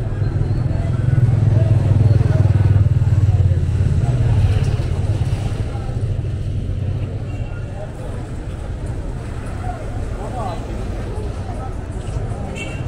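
Busy city street ambience: a low traffic rumble, loudest in the first few seconds and then easing, under the chatter of passers-by.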